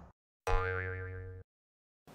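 Cartoon 'boing' sound effect: a springy, wobbling pitched twang that starts suddenly about half a second in and fades out over about a second.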